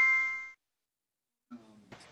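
Electronic chime ringing out: several clear, steady tones fading away within about half a second. Then near silence, with a faint voice starting near the end.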